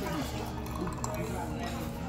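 Restaurant dining-room background: murmured voices and soft music, with a light clink of tableware.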